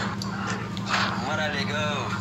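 Voices over a live video call making non-word vocal sounds, with a high, rising, whine-like voice in the second half.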